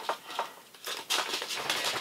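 Small paper seed packet rustling and crinkling in the hands as it is taped shut, with a few light clicks, then a soft rasping rustle for the last second.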